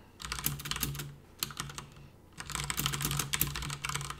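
Typing on a computer keyboard: two quick runs of keystrokes with a pause of about a second between them.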